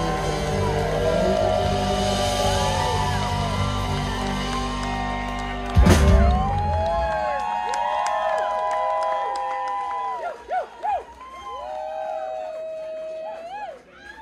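Live band with acoustic guitar, electric guitar and bass playing the close of a song, ending on one loud final hit about six seconds in. Then the audience cheers and whoops.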